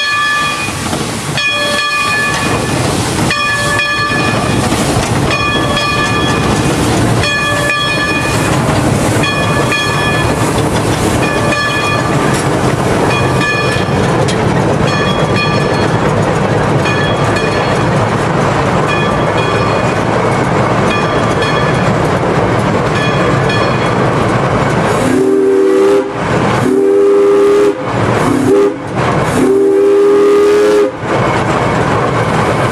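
Climax geared steam locomotive running under way, heard from inside the cab: a steady steam hiss and running noise with a high-pitched tone coming and going about once a second. In the last five seconds the steam whistle blows in four blasts.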